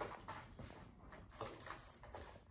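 Light taps and scuffs of a dog's paws and claws on a hard floor as it jumps and weaves through the handler's legs, mixed with her shoe steps. The sounds come in short, irregular clicks, with a brighter cluster near the end.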